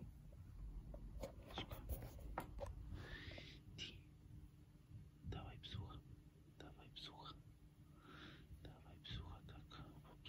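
Soft, quiet whispering in short broken bits, with small rustles and clicks, over a faint steady low hum.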